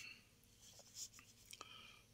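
Near silence with faint rustling and a few soft clicks as brocade fabric is handled and slid into place at a sewing machine.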